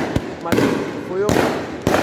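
Fireworks going off: a dense crackle throughout, with loud bangs about half a second in, just after a second, and near the end.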